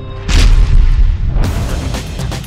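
Title-sequence sound effect: a short whoosh into a sudden deep boom hit about a third of a second in, ringing out for about a second alongside theme music.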